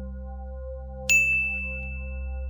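A single bright bell ding about a second in, the notification-bell sound effect of a subscribe button being clicked, its tone ringing on after the strike.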